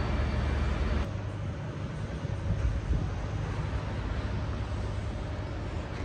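Steady outdoor street rumble, vehicle-like, with a heavier deep rumble that drops away about a second in and a lighter, even noise after it.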